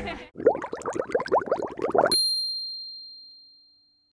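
A quick run of about ten short rising chirps, then a single bright chime that starts suddenly about two seconds in and rings on, fading away over nearly two seconds: an edited-in TV sound effect.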